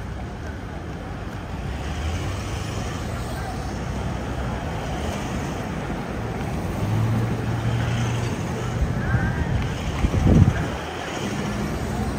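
Large SUVs in a slow-moving motorcade driving past close by, a steady low engine hum with tyre and road noise that grows a little louder as the vehicles near. About ten seconds in there is a brief, loud low rumble.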